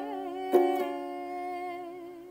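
A ukulele strummed once about half a second in, its chord ringing on and slowly fading, while a woman sings a long wavering note along with it.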